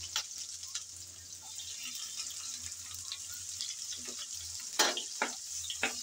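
Chopped garlic and sliced onion frying in hot oil in a non-stick wok, a steady sizzle. Near the end come a few short knocks and scrapes of a wooden spatula stirring them.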